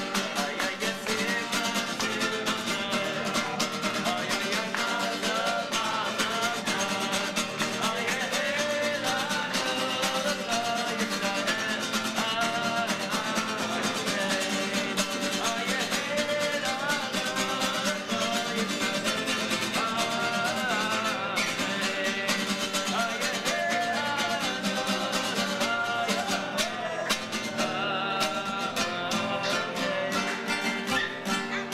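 Live acoustic guitar music, strummed steadily under a wavering melody line.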